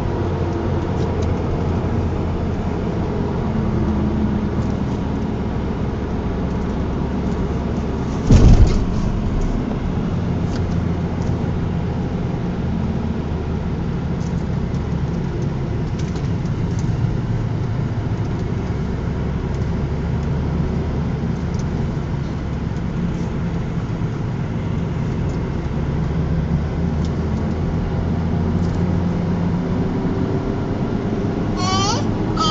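Steady engine and road noise of a car being driven, heard from inside the cabin. A single brief, loud thump sounds about a third of the way through.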